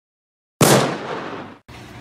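A single gunshot sound effect: a sudden loud bang about half a second in that rings and fades for about a second, then cuts off abruptly into faint background noise.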